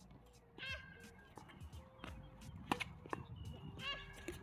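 Doubles tennis rally on an outdoor hard court: sharp pops of rackets striking the ball, the loudest nearly three seconds in, with brief high squeaks of sneakers on the court.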